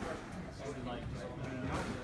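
Indistinct voices talking, with a few faint clicks.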